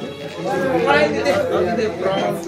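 Chatter: several people talking over one another around a table.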